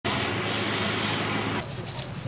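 A motor vehicle running nearby, loud and steady with a low hum under a wide hiss. It cuts off abruptly about one and a half seconds in, giving way to quieter crowd voices.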